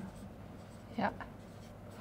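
Marker pen writing on a flipchart, faint.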